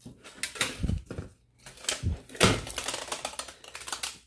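Tape measure blade being pulled out and laid around a rolled cylinder of thin embossed aluminum sheet: a run of irregular clicks and rattles of the blade and the flexing sheet, loudest about two and a half seconds in.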